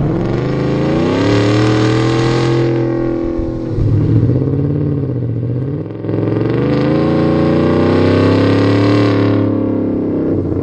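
Car engine revving: its pitch climbs and holds, dips around the middle, climbs and holds again, then drops off near the end.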